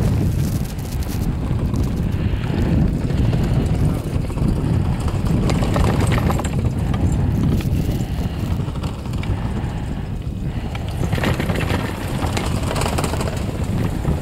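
Steady low rumble of wind buffeting the microphone while riding up a detachable quad chairlift, with the lift's running noise underneath.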